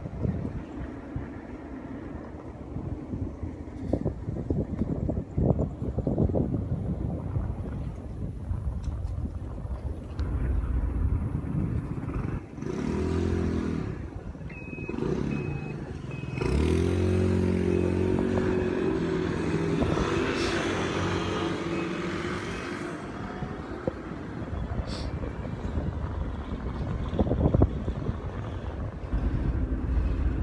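Motorbike riding along a road, with rough wind rumble on the microphone and the engine's drone underneath. About halfway through, the engine note comes up clearly, louder and rising slightly as the bike pulls away and speeds up for several seconds, then settles back into the wind noise.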